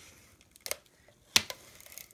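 Quiet handling of folded cardstock while adhesive is applied to its tabs, with two short clicks, the second sharper and louder.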